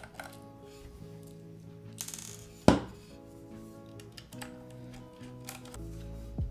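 Background music playing under small clicks of a screwdriver working screws out of a keyboard case, with a noisy scrape about two seconds in and one sharp knock just after it.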